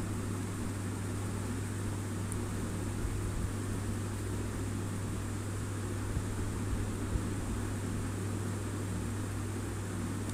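Batter fritters deep-frying in hot oil in a steel kadai: a steady sizzle with a few faint ticks from the spoon against the pan. A constant low hum runs underneath.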